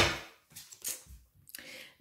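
Tarot cards being handled as a card is drawn from the deck: a sharp card snap at the start that dies away quickly, followed by a few faint soft rustles and taps.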